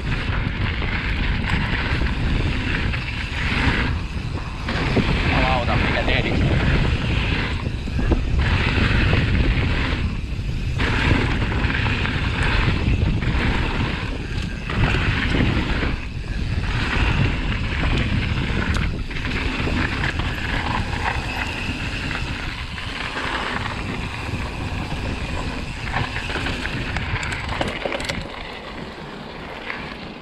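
Wind buffeting the microphone of a camera on a Commencal Meta mountain bike ridden fast down a dirt trail, mixed with tyre noise on dirt and the knocks and rattles of the bike over bumps.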